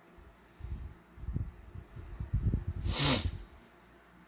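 Low, uneven handling bumps from the model and camera being moved, then about three seconds in one short, sharp snort of breath through the nose from a man with a head cold.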